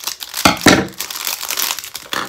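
Thin clear plastic packaging bag crinkling as it is cut open with scissors and handled, loudest about half a second in, then the item is pulled out of it.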